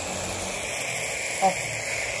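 Fountain firework and handheld sparkler hissing steadily, with a brief voice about a second and a half in.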